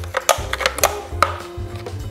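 Spoon knocking and scraping against the inside of a blender jar, a quick irregular series of sharp clicks, as hummus is scooped out of the jar onto a plate.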